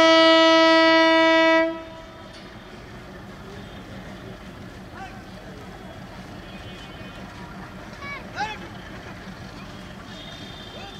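Diesel locomotive's horn sounding one long blast on a single note, cutting off suddenly under two seconds in. After it, a much quieter steady hum of the railway station background, with a few brief calls near the end.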